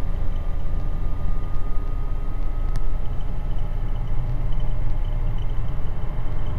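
Cabin noise of a Guimbal Cabri G2 helicopter descending in autorotation with its engine throttled back: a steady low drone from the rotor and drivetrain, with faint steady whining tones above it. One whine fades out about two seconds in.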